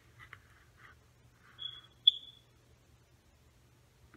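Faint handling of a small cardboard cologne box in gloved hands: a few light clicks and rustles, then a brief high-pitched squeak about two seconds in, the loudest moment, with a sharp click on it.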